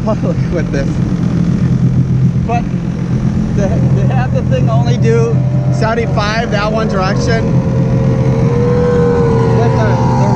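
Supercharged Sea-Doo RXT-X 300 jet ski running at speed, its engine a steady low drone under rushing water and wind.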